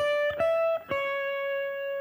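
Clean electric guitar playing three single notes: a first note, a slightly higher one, then a slightly lower note that is held and rings on.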